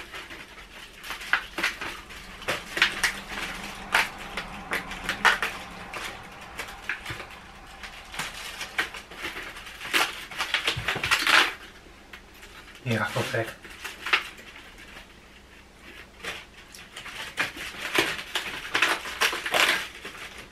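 Cardboard advent calendar doors being pried and torn open and chocolates pushed out of the plastic tray: an irregular run of crackling, rustling and small clicks, with a busy stretch about ten seconds in.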